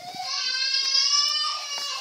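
A high-pitched voice drawing out one long wailing note that rises at the start and then holds for nearly two seconds.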